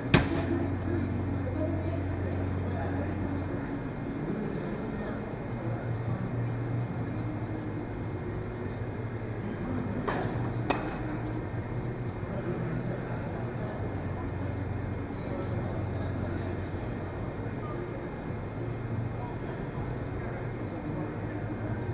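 Tennis ball struck by racket: a sharp pop just after the start and two more close together about ten seconds in, over a steady hall hum and indistinct spectator chatter.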